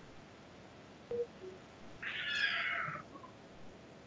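A single high-pitched cry lasting about a second, about two seconds in, over faint room noise.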